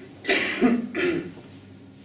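A man clearing his throat with two short coughs in the first second and a half, picked up close on a headset microphone.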